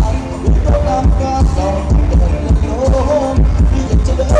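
Thai ramwong dance music from a live band played loud through a PA, with a steady heavy bass beat under a melody line.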